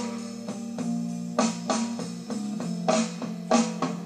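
Blues backing track in an instrumental break between vocal verses, with held chords and sharp accented beats.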